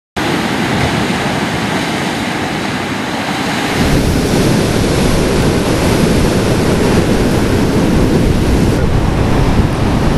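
Ocean surf breaking on a beach, a steady rushing wash, with wind rumbling on the microphone. The low rumble grows louder about four seconds in.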